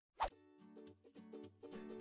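A short pop just after the start, then faint soft music of short pitched notes stepping up and down: an editing transition sound and music sting.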